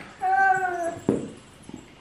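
A young girl's single wordless vocal call, drawn out and rising then falling in pitch, followed about a second in by a brief soft thump of movement on the bedding.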